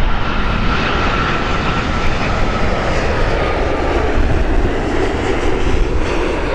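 Boeing 787-9 airliner on final approach with its landing gear down, jet engines making a steady loud rush and low rumble. A faint whine slowly drops in pitch as it passes.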